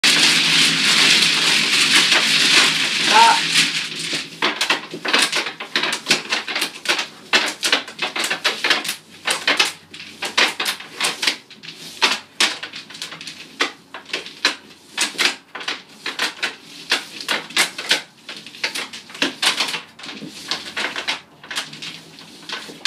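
Mahjong tiles being shuffled by hand across the table top, a dense continuous clatter for the first three or four seconds, then a long run of sharp separate clicks and clacks as the tiles are picked up and stacked into walls.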